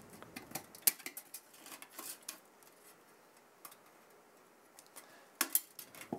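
Wire fan clips clicking and tapping against the aluminium fin stack of a Cryorig H5 tower CPU cooler as its slim 140 mm fan is unclipped and pulled off. A scatter of small clicks in the first couple of seconds, a quiet pause, then a couple of louder clicks near the end as the fan comes away.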